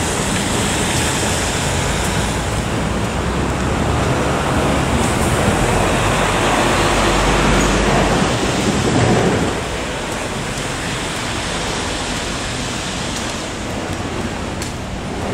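Steady road-traffic noise of buses and cars on wet asphalt, with a low engine rumble. It grows louder in the middle and drops off suddenly about nine and a half seconds in.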